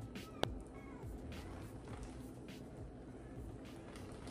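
Soda poured from a can onto a leather sneaker, faintly splashing and dripping, with a sharp click about half a second in.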